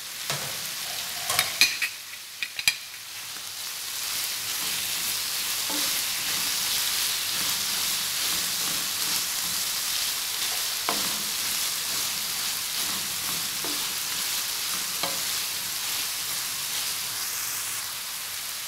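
Beef keema and chopped tomato sizzling in a frying pan as they are stirred and fried with a spatula. There are a few sharp knocks of the spatula against the pan in the first three seconds, then a steady sizzle.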